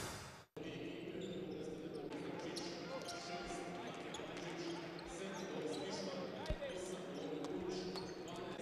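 Basketballs bouncing on a hardwood court in a large, echoing sports hall, with a murmur of voices, one harder thump about six and a half seconds in. The tail of the intro music ends about half a second in.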